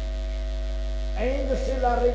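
Steady electrical mains hum from a microphone and sound system. A man's voice comes in over it about a second in.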